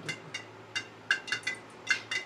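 Metal spatula clinking against a steel wok, a run of about eight quick, irregular clinks that ring briefly.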